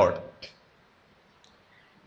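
A man's spoken word trails off, then a pause in the speech: near silence with two faint clicks, about half a second in and again near the end.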